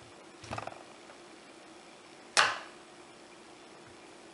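A short scraping rustle as a soap loaf is slid along a wooden soap cutter's bed. Then one sharp clack, the loudest sound, as the wire-bow cutter is brought down through the loaf to cut off a bar.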